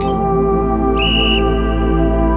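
Workout interval timer's electronic beep: a single high-pitched tone lasting under half a second, about a second in, signalling the end of the rest and the start of the next timed round. A countdown tick sounds just before it, over steady background music.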